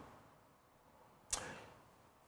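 Near silence, broken once about a second and a half in by a short, sharp intake of breath that fades within half a second.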